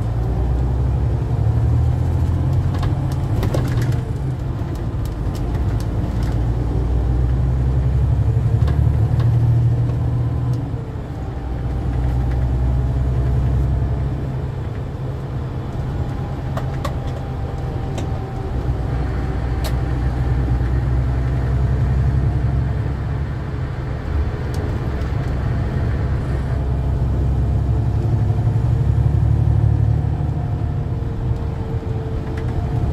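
National Express coach in motion, heard from inside the passenger cabin: a steady low diesel engine drone with road noise. The drone eases off briefly a couple of times in the middle, and a few faint rattles and clicks come through.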